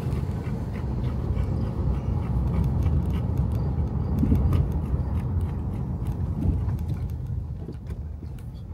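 A car driving slowly over rough, broken pavement, heard from inside the cabin: a steady low rumble of engine and road noise, with scattered small ticks and rattles.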